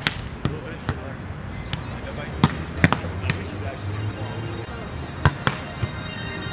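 Volleyball being struck by players' hands and forearms during a beach volleyball rally: a series of sharp slaps at uneven intervals, with a quick cluster around three seconds in and a pair a little after five seconds.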